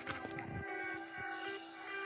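Background music with sustained, held notes that shift to a new chord near the end.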